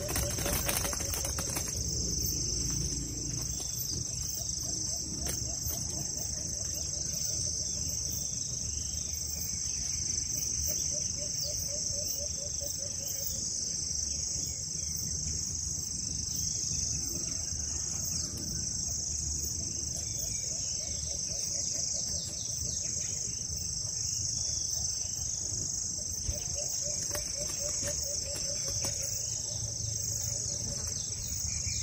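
A steady, high-pitched chorus of crickets and other insects, with a low, rapidly pulsed call repeating about four times and a brief rustle near the start.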